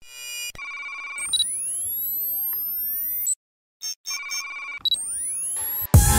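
Electronic sound effects of an animated logo intro: steady synthesized tones and bright pings with high sweeps rising in pitch, a brief silence a little past the middle, then a second similar run that breaks into music at the end.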